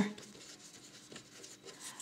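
Faint scratching of a pen writing a word on paper.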